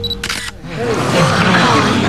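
A camera shutter clicks once, then a crowd of people murmur and chatter over one another.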